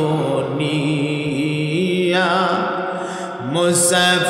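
A man's voice chanting a sermon passage in a slow, melodic sung style into a microphone, holding long notes that waver and glide in pitch. A short break for breath comes a little after three seconds in, then a new note starts.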